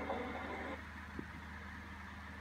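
Quiet, steady low hum with a single faint click about a second in.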